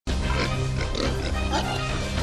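A group of pigs grunting and squealing over a steady, low music bed.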